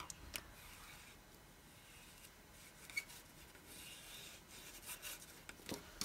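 Faint rubbing and scraping of a liquid glue bottle's tip spread along a cardstock glue tab, with a few light clicks.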